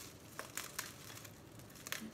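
Plastic bubble wrap crinkling softly as scissors cut into it, with a few faint sharp clicks.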